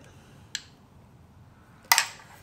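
A faint tick about half a second in, then a sharp clink of a metal spoon against a ceramic bowl near the end, as sauce is spooned out.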